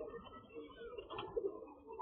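Domestic pigeons cooing in a flock, a continuous overlapping murmur of low calls.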